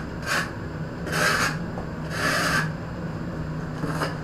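Steel trowel scraping over a wet cement mortar bed on the floor during tiling: three scraping strokes, a short one followed by two longer ones about a second apart.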